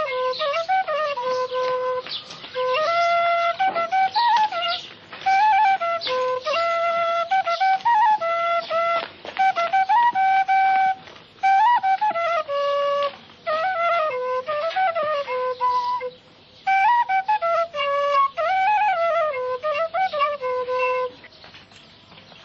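A solo flute plays a melody in short phrases with brief pauses between them, as the film's music. It stops about a second before the end.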